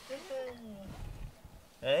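Cat giving one long, low meow that slides down in pitch over about a second. Near the end a person bursts out laughing.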